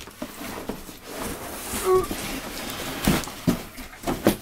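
Cardboard box being handled as its flaps are opened and the boxed speaker set inside is slid out: rustling and scraping, a brief squeak about two seconds in, and a few knocks after three seconds.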